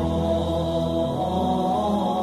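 Buddhist devotional chanting over soft music: long, held chanted notes above a low steady drone.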